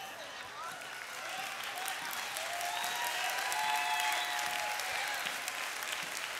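A church congregation applauding. The clapping swells over the first few seconds and eases off near the end, with faint voices calling out over it.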